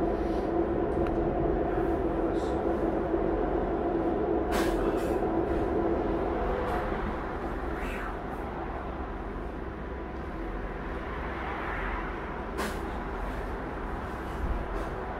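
A light-rail car running, heard from inside the passenger cabin: a steady rumble with a motor hum that fades about halfway through as the sound eases. There are two sharp knocks, one at about five seconds and one near the end.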